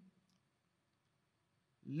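Near silence: a pause in a man's speech through a microphone, with the end of a word at the start and his voice coming back in near the end.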